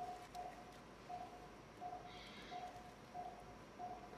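Faint, short beeps at one steady pitch from an operating-room patient monitor's pulse tone, repeating about once every 0.7 seconds in time with the patient's heartbeat.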